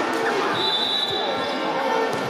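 Many voices of spectators and players calling and talking at once, echoing in a large sports hall, with a thin high steady tone for about a second.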